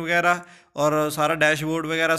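A man speaking Punjabi in a level, sing-song narrating voice, with a brief pause about half a second in.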